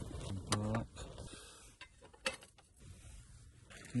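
A few sharp clicks and light knocks of small camping gear being handled, with a short hum from the voice about half a second in.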